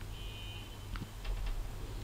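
Quiet background with a steady low hum, a faint brief high tone near the start and a few faint clicks about a second in.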